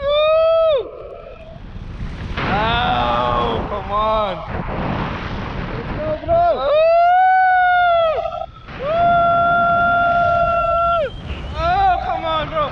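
People in flight yelling and screaming with excitement in several long, high cries, the last held steady for about two seconds, as a tandem paraglider swings. Wind rushes on the microphone between the cries.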